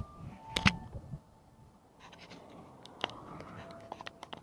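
Bicycle rolling over stone paving: scattered sharp clicks and rattles over a soft hiss, with a louder click about two-thirds of a second in and another about three seconds in.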